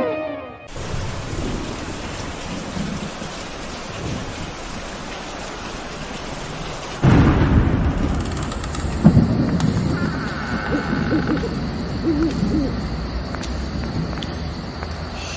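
Rain and thunder ambience: a steady hiss of rain, then about seven seconds in a sudden loud thunderclap that rumbles on and slowly fades.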